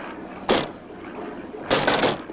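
Small plane's engine sputtering as it runs out of fuel: two noisy bursts about a second apart, the second longer, over a steady low drone.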